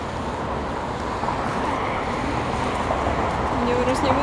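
Road traffic noise, an even hum of passing cars that slowly grows louder.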